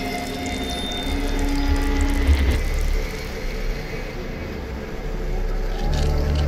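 Dark horror-film score: sustained droning tones over a deep low rumble, the higher tones dying away about halfway through before the music swells again at the end.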